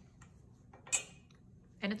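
A metal offset spatula set down on a hard kitchen counter: one sharp, bright clink about a second in, with a few faint taps around it.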